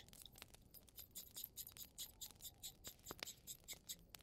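Faint scratchy rubbing and scattered small clicks of paper and craft supplies being handled: a paper strip, an ink pad and a small bottle.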